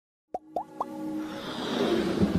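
Logo-intro sound effects: three quick blips that each glide upward in pitch, the first about a third of a second in, then a swelling whoosh that builds toward the end.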